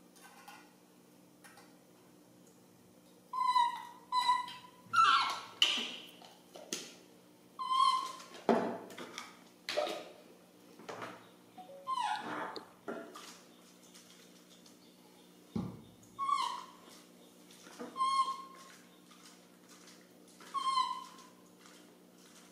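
Baby macaque crying in a string of about a dozen short, high calls, some falling in pitch, starting about three seconds in: the cries of a hungry infant wanting its milk. A few light clicks and one dull knock near the middle come from the bottle and formula tin being handled.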